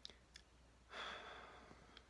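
A man's breathy sigh, an exhale starting about a second in and fading away, after a couple of faint mouth clicks.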